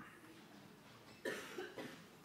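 A short, faint cough a little over a second in.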